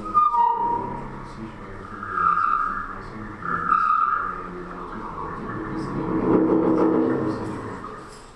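Experimental brass horn with very long tubing and several bells, blown in held notes: two high notes at the start, a high note swelling twice, then lower, fuller notes near the end.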